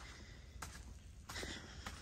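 Faint footsteps of a person walking on grass, three steps a little over half a second apart.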